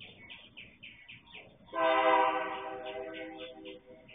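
Diesel freight locomotive's air horn sounding one blast of about a second and a half, about two seconds in, then dying away. Birds chirp throughout.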